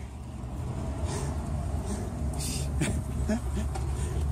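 Steady low outdoor rumble picked up by a handheld camera's microphone, with a few short hissy rustles, the loudest about two and a half seconds in.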